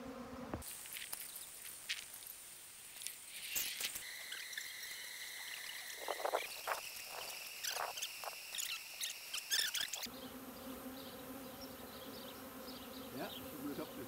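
A honeybee swarm humming steadily. Shortly after the start the hum gives way to high, steady insect tones with a few short clicks, and the swarm's hum returns about ten seconds in.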